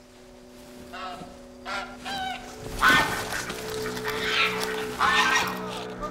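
Domestic geese honking, about six short calls with the loudest about three seconds in, over background music with long held notes.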